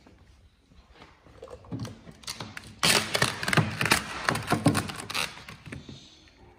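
Vinyl wrap film crackling and rustling as it is pulled and stretched by hand over a car's rear quarter panel, with a loud burst of dense crackles from about three seconds in to just past five.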